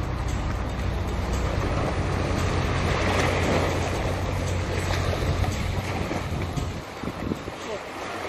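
Sea ambience with wind on the microphone and moving water, over a low steady boat-motor hum that fades about six and a half seconds in, leaving scattered splashes and distant voices.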